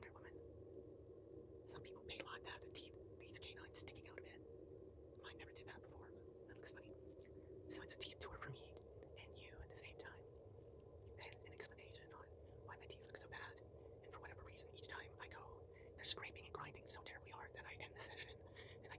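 Quiet mouth sounds close to the microphone: short lip and tongue clicks with breathy whispering, coming in irregular clusters with short pauses between.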